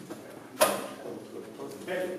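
A single sharp knock about half a second in, followed by faint voices near the end.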